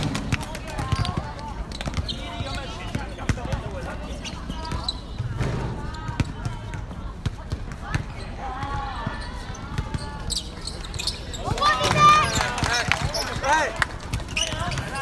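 A basketball bouncing on an outdoor court during free throws, with voices calling out around it, loudest a little before the end.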